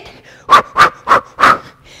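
A woman's short, sharp breaths out, four in quick succession at about three a second: exertion breaths with each punch of a boxing combo.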